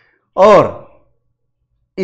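A man's voice saying a single word in Hindi ("aur", "and"), with silence before and after it.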